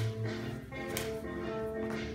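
Music playing, with two sharp hits about a second apart.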